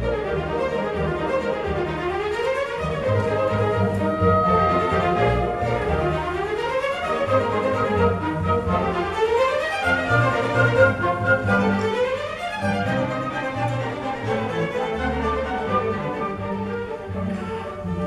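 A string orchestra of violins, violas, cellos and basses playing a classical piece live, with runs that sweep down and back up about every three seconds over sustained low notes.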